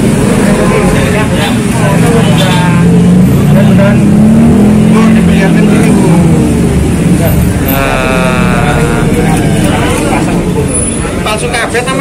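An engine running, its pitch and level rising around the middle and easing back down, with voices talking over it.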